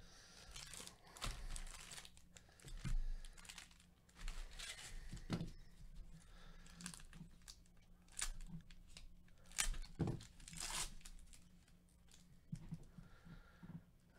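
Plastic foil wrappers of 2020 Topps Series 2 baseball card packs being torn open and crinkled by gloved hands, in irregular bursts of tearing and rustling.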